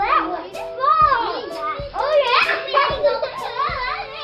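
Children's voices, high-pitched and rising and falling, calling out and playing over background music.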